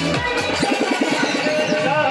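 Electronic dance music with a steady beat and repeated sliding bass notes.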